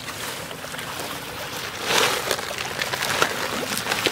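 Pond water splashing and sloshing, with many small splashes, from feed crates being moved in the water and hungry fish feeding at the surface. A louder burst of splashing about two seconds in.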